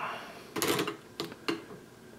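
Clicks and knocks of a Granberg 106B metal chainsaw filing jig being flipped over and repositioned on the chain: four or five short sharp knocks, spaced irregularly over the two seconds.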